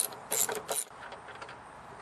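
Socket-wrench ratchet clicking in three short bursts in the first second as it unscrews a lawnmower engine's spark plug.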